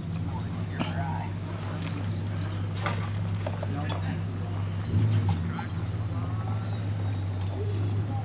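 Faint brief whines from beagles over a steady low hum and faint murmured voices.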